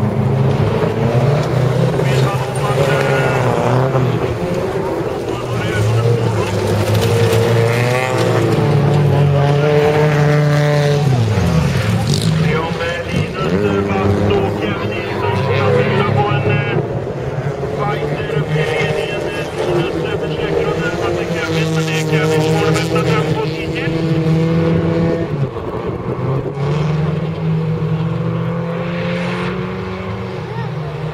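Several race cars' engines revving hard on a gravel track, their pitch climbing and dropping with throttle and gear changes as they race. About twelve seconds in, one engine's pitch drops deeply and climbs again.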